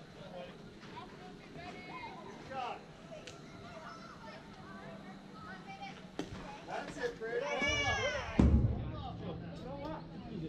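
Outdoor voices of spectators and young players chattering and calling out. Near the end a loud high-pitched shout rises and falls, and a short dull low thump comes with it.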